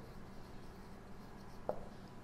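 Felt-tip marker writing on a whiteboard, a faint scratching of the tip across the board, with a single short tap near the end.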